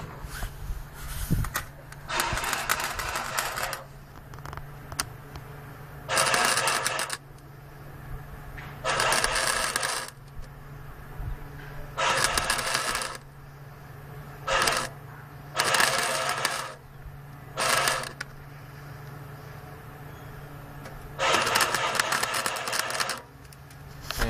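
Wire-feed welder arc crackling in about eight short bursts of one to two seconds each, with pauses between: stitch welds being laid on the steel truck bed. A steady low hum runs underneath.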